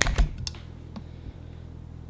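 A few sharp clicks and knocks of handling in the first half second and one more about a second in, then a low steady hum.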